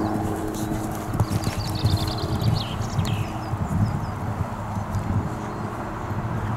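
A horse's hooves thudding on sand footing as it canters past close by, in a repeated soft beat.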